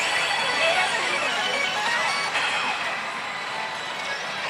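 Pachislot Code Geass slot machine playing its music and electronic effects while the reels are spun and stopped, over the din of other machines in a pachislot hall.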